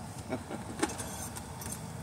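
A few short clicks and small high ticks of handling, like keys or small objects being moved, over a steady low background rumble.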